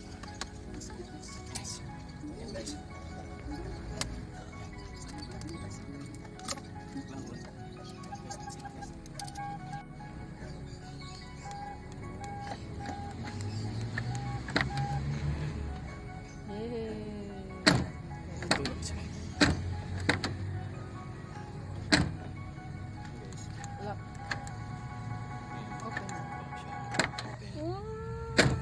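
Background music throughout; in the second half, four sharp clicks from the van's door handle and latch being worked.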